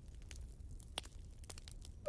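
Faint crackling of a wood campfire: scattered small pops over a low steady rumble, the clearest pop about a second in.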